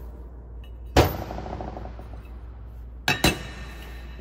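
Metal ceiling fan motor parts, the copper-wound stator and the housing, set down on a workbench: one loud clank with a short metallic ring about a second in, then two quick knocks a little after three seconds.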